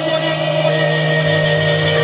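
Harmonium holding one steady sustained chord under a pause in the kirtan recitation.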